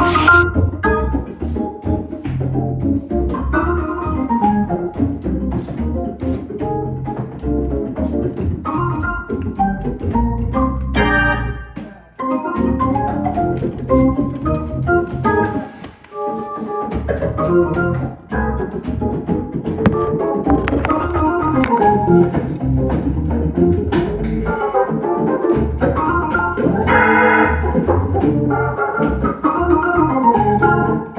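Hammond organ played solo: quick runs of notes over a low bass line, with short gaps about twelve and sixteen seconds in and a brighter, fuller chord a few seconds before the end.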